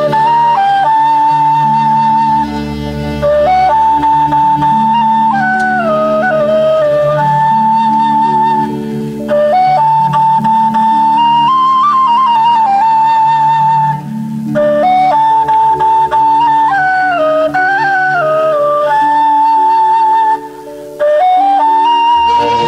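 Solo flute playing a slow, ornamented melody in Arabic style, with long held notes and wavering turns between short phrases, over a low sustained accompaniment.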